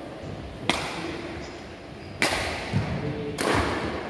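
Badminton racket strings striking a shuttlecock three times in a singles rally, starting with the serve: sharp cracks about a second and a half apart, each echoing briefly in the hall.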